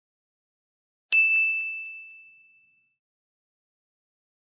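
A single bright bell-like ding, struck once about a second in, holding one high tone as it rings and fades away over about a second and a half. It is a chime sound effect.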